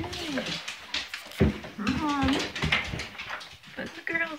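Pet dogs whining in greeting: a string of short whines that rise and fall in pitch.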